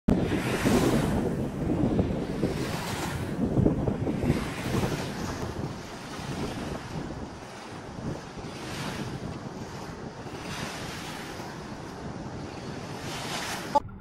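Small river waves washing onto a sandy bank, swelling and fading every couple of seconds, with wind rumbling on the microphone, heaviest in the first few seconds. A short sharp click just before the end.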